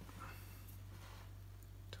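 Quiet room with a low steady hum, and one faint snip of fine fly-tying scissors near the end.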